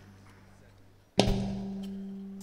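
Andalusian orchestra music: after a soft, fading lull, the ensemble plays a single loud accented hit about a second in, a sharp percussive strike together with a low held note that rings on and slowly fades.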